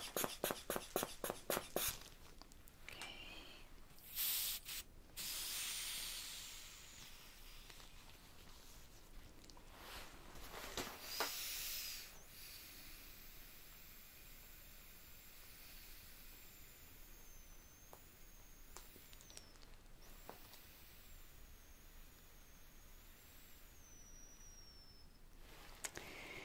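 Manual blood-pressure cuff pumped up with its rubber hand bulb: a quick run of squeezes, about four a second, in the first two seconds. Air then hisses out through the release valve in a few bursts, around five and eleven seconds in. A long faint stretch follows while the cuff slowly deflates for the reading.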